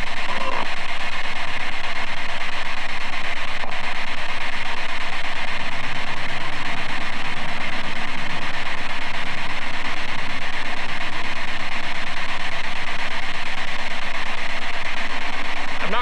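Spirit box sweeping through radio stations: loud, continuous radio static with brief chopped fragments of broadcast voices.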